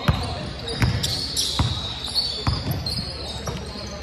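Basketball dribbled on a hardwood gym floor: about five bounces, a little under a second apart.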